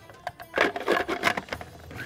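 A quick run of clicks and scrapes from a kitchen utensil against a bowl, lasting about a second, over background music.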